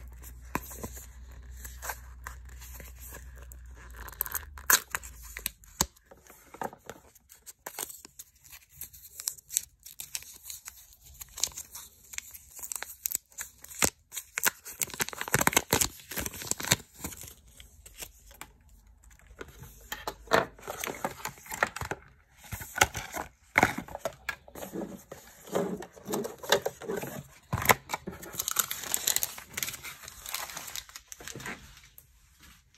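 Cardboard box and paper packaging being handled and pulled open: irregular crinkling, rustling and tearing with scattered clicks and taps throughout.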